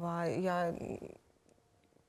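A woman's voice holding a drawn-out hesitation syllable that trails off into a breath, followed by about a second of quiet room tone.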